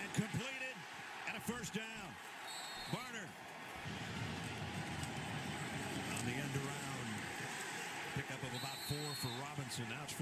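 Football game broadcast playing back at low level: commentators' voices over a steady stadium crowd noise, with a few sharp knocks and two brief high tones.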